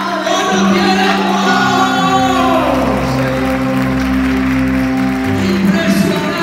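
Live worship music from a church band: long held keyboard chords over a low bass note, with voices singing or calling over it and some hand clapping.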